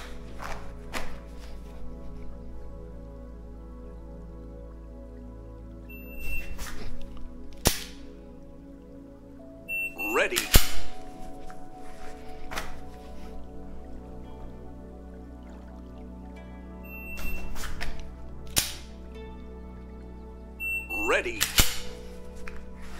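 A shot-timer app's start beep, then the sharp click of a dry-fired pistol's trigger about 1.7 seconds later, twice, timing each draw from concealment. Between these, and near the end, the app gives a tone and a spoken "Ready" prompt. Background music plays underneath.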